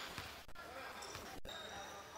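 A basketball being dribbled on a hardwood gym floor, with voices in the gym around it.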